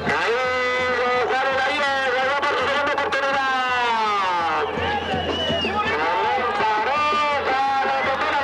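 Music mixed with long, drawn-out shouts that slowly rise and fall in pitch, several overlapping.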